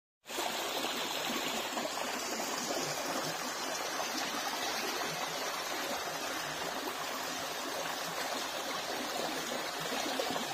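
A small, shallow woodland brook running steadily over moss-covered stones and boulders: a continuous rush and trickle of water.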